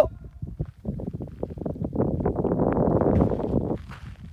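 Footsteps crunching on a gravel track. The crunches are irregular, grow denser and louder about halfway through, and stop shortly before the end.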